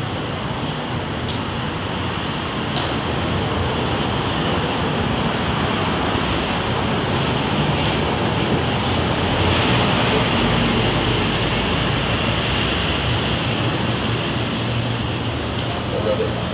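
Steady city street traffic noise from passing vehicles, building to its loudest about ten seconds in.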